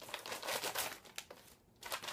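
Packaging crinkling as a bagged item is unwrapped by hand: about a second of crackly rustling, a brief pause, then more crinkling near the end.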